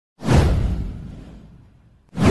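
A single whoosh sound effect with a deep low end. It swells in quickly a moment after the start and fades away over about a second and a half.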